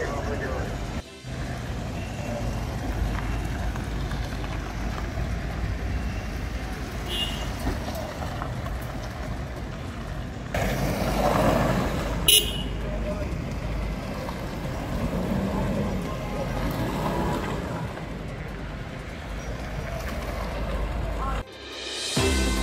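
Outdoor scene of vehicles running with indistinct voices of a crowd, and one short, loud horn toot about twelve seconds in as a police pickup drives off.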